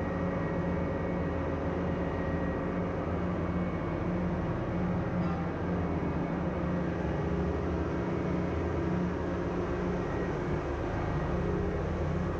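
Steady drone of ship engine-room machinery, a continuous low hum made of several steady tones, heard from inside the main engine's scavenge air receiver.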